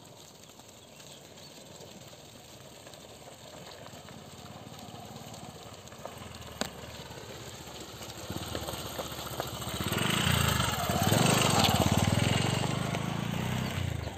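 A motorcycle engine running as it comes up the gravel road, growing steadily louder, loudest about ten to twelve seconds in, then easing off a little.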